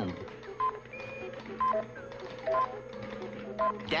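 Electronic control-equipment sounds: short beeps alternating between a higher and a lower pitch, recurring about once a second over a steady electrical hum.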